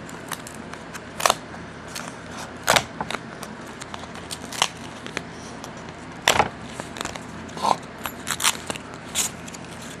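Packing material crinkling and rustling as a shipped plant is unwrapped by hand, with irregular sharp crackles a few times a second, the loudest about a second in, near three seconds, and a little after six seconds.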